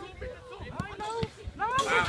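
Voices calling across an outdoor football pitch, with a few short knocks in the middle. A louder shout starts near the end.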